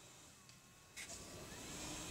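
Faint steady background noise with no clear source, growing a little louder about a second in.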